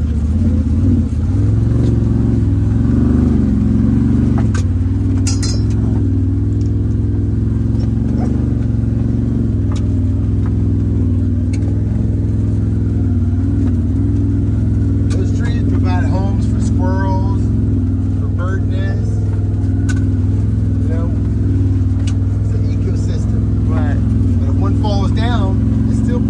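Side-by-side UTV engine running steadily as it drives, a constant low drone.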